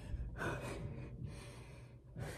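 A person breathing hard close to the microphone, about three heavy breaths in and out, short of breath from doing push-ups.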